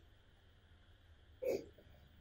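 Quiet room hum, then a single short throat sound from a man, like a brief cough, about one and a half seconds in.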